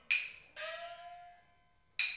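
Chinese opera percussion accompanying a dance: a sharp wooden clapper strike, then about half a second later a small gong strike that rings with a slightly rising pitch and fades within a second. Another sharp clapper strike comes right at the end.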